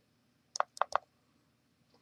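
Four short, sharp clicks in quick succession a little after half a second in, from keys being typed on a BlackBerry PlayBook tablet's touchscreen keyboard.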